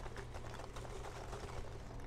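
Foam packing peanuts pouring from a cardboard box into a foam shipping cooler: a faint, continuous rustle of many small, light clicks over a steady low hum.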